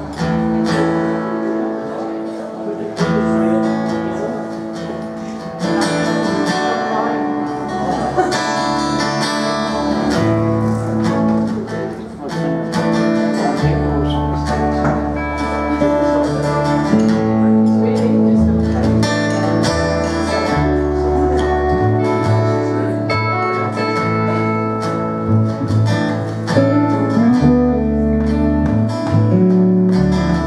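Live band music: an acoustic guitar, an electric guitar and an upright double bass playing together, the bass notes changing underneath the guitars.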